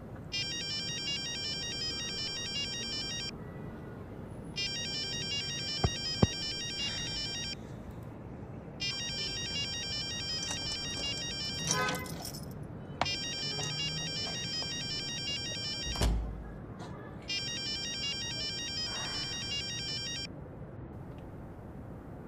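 Mobile phone ringtone for an incoming call: a high electronic warbling pattern that repeats in five bursts of about three seconds each, with short pauses between them.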